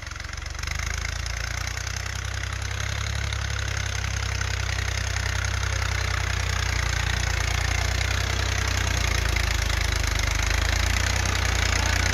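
Orange Fiat tractor's diesel engine running steadily under load as the tractor climbs a dirt bank, getting louder about a second in.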